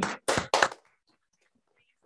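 A couple of short, sharp knocks close to a microphone in the first second, then near silence.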